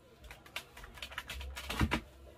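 Hard plastic clicking and tapping as a Milwaukee M18 battery pack is handled and slid off a compact cordless vacuum, ending with a louder knock near the end.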